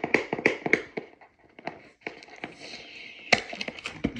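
Cardboard product box being handled and opened by hand: a quick run of taps and knocks in the first second, a short lull, then scattered light taps and one sharp knock near the end.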